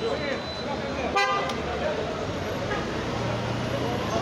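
A vehicle horn gives one short toot about a second in, over street traffic and the chatter of a crowd.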